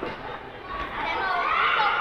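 Chatter and shouting of children's voices in a sports hall, with high-pitched calls getting louder about a second in.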